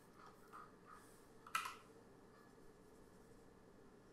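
Near silence, room tone with one sharp click about a second and a half in and a few faint ticks before it, from working the computer's input devices during a selection.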